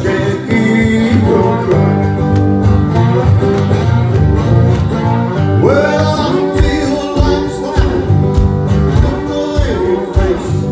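Live acoustic blues: a steel-string acoustic guitar played steadily, with a man singing over it.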